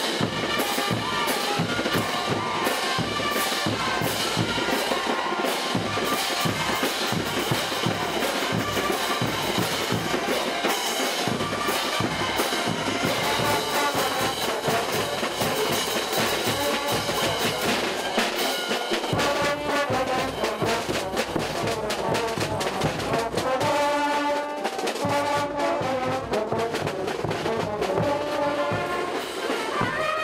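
Brass band playing festive Bolivian dance music with a steady drum beat, trumpets and trombones carrying the tune. From about two-thirds of the way in, the drum beat is less prominent and long held horn notes stand out.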